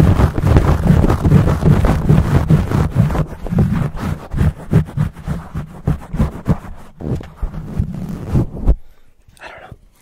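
Fingers scratching fast and hard on a microphone's cover right against the capsule, a dense, rumbling scratch. The strokes thin out after about three seconds and stop a second or so before the end.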